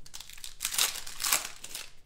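Foil wrapper of a 2018 Rookies & Stars football card pack crinkling as it is handled and opened. The crackly rustle is loudest from about half a second in to a second and a half in.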